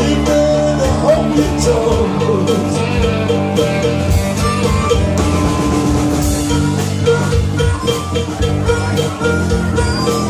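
Live rock band playing with drum kit and electric guitar, led by an amplified harmonica played into a hand-cupped microphone, its long held, bending notes over a steady beat.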